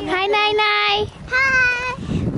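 A young child singing two high, drawn-out notes, with a short break about a second in.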